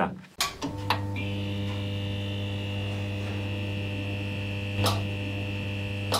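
Steady electric mains hum of a neon-sign buzz sound effect: it comes on with a couple of clicks about half a second in, a thin high whine joins about a second in, and a single crackle comes near the end.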